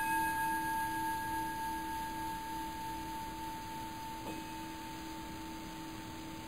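A single metal bell-like tone, struck right at the start, rings on with several steady overtones and fades slowly.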